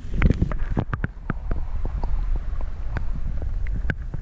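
Muffled water sloshing and knocking against a camera held at and under the surface of a pond: a steady low rumble with scattered sharp clicks, loudest in a burst of splashing just after the start as a carp is released into the water.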